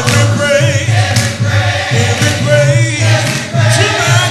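A man singing a gospel song into a microphone, his voice wavering with vibrato on held notes, with music behind him.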